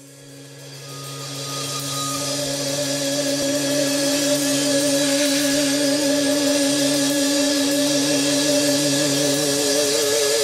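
Opening of a hard-rock song: held electric guitar and bass notes fade in from silence over a cymbal wash, building steadily. Near the end the higher held note starts to waver.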